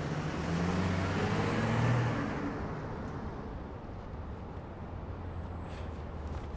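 A car engine pulling away, its note rising and getting louder up to about two seconds in, then fading to a faint low hum as the car drives off.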